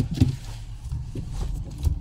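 A sharp click and a knock as the phone is handled and set in place, over the low steady hum of the car's idling engine heard inside the cabin.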